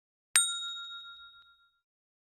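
A single bell-like ding sound effect from a subscribe-button animation: one sharp strike about a third of a second in, ringing out and fading over about a second and a half.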